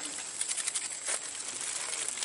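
Steady outdoor background hiss with scattered faint clicks and rustles, busiest in the first second.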